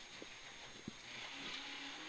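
Faint, steady in-car noise of a Peugeot 106 GTi rally car running on a stage, with a couple of brief faint clicks.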